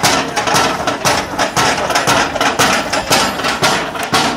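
Quick, even hammer blows, about four a second, as the firefighter strikes repeatedly at a wooden rig.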